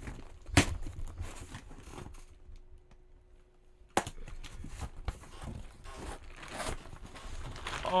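Packing tape on a cardboard box being torn open with a pen, with two sharp snaps about half a second and four seconds in, and cardboard and plastic packing rustling and crinkling in between.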